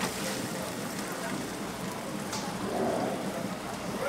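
A large aluminium stockpot of water at a rolling boil: a steady bubbling hiss, with water draining back into the pot from a lifted mesh skimmer of boiled pork.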